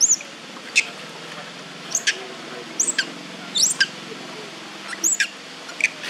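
Short, high-pitched squeaky chirps from a small animal or bird, repeated about once a second, over a faint low hum.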